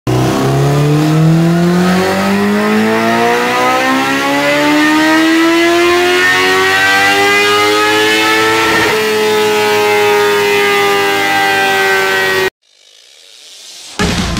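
Honda CBR1000RR inline-four with a full aftermarket exhaust making a dyno pull. It revs in one gear, its note climbing steadily for about nine seconds, then holding near the top of the rev range. The sound cuts off abruptly about a second and a half before the end.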